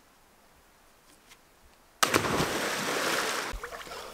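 Near silence, then about two seconds in a person jumps into a deep pool: a sudden loud splash that churns on for about a second and a half and dies away.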